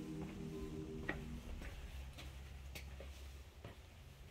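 Slow footsteps on a flagstone floor heard as faint, irregular taps about every half second, while sustained music tones fade out about a second and a half in.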